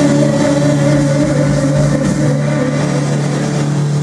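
Live heavy metal band holding one long distorted chord, the electric bass and guitars ringing out steadily through the amplifiers.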